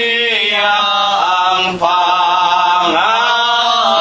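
Congregation singing a slow Tagalog hymn in long held notes, with a brief break for breath about two seconds in.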